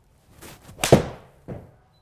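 A 7-iron striking a golf ball on an indoor hitting mat: a crisp, loud strike about a second in, after a faint swish of the downswing, then a quieter knock about half a second later.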